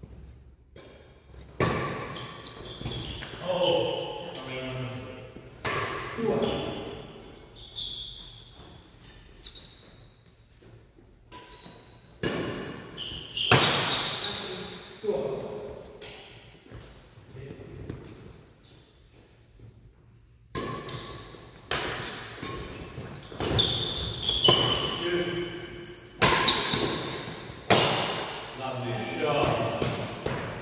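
Doubles badminton rallies in a large sports hall: rackets striking the shuttlecock in sharp, echoing cracks, with shoes squeaking and stepping on the wooden floor. The hits come in irregular runs, with a quieter lull in the middle.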